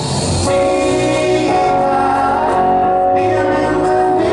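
Live pop band playing, with drums and electric guitar under a male lead vocal; held chords come in about half a second in and sustain.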